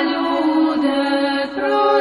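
Orthodox Christian chant: voices singing held notes that move to new pitches a little under a second in and again near the end, with a brief dip between phrases.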